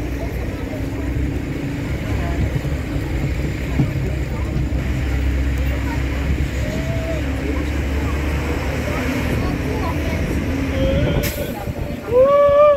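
Outdoor city ambience: a steady low rumble of distant traffic with faint voices in the background, and a sharp click near the end.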